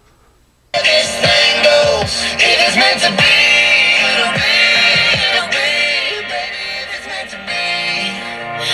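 ROJEM portable speaker playing an FM radio station: a song with singing starts suddenly under a second in, after a brief near silence as the speaker switches into FM mode.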